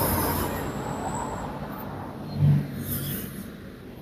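Steady rushing noise, loudest at first and fading, with a brief low murmur about two and a half seconds in.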